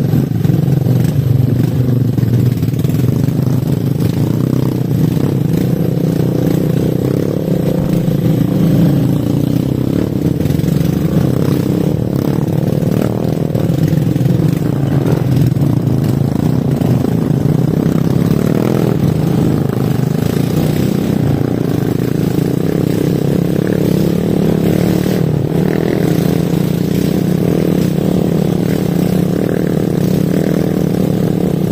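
Habal-habal motorcycle engine running steadily and loudly at riding speed, with small rises and dips in pitch as the throttle changes.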